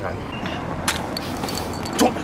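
Steady outdoor street background noise, with one sharp click a little under a second in as a glass beer bottle is picked up off cobblestones.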